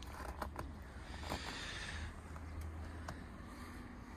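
Faint background noise: a steady low rumble with a soft hiss and a few small clicks.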